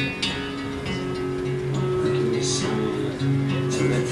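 Acoustic guitar strummed, its chords left ringing between strokes.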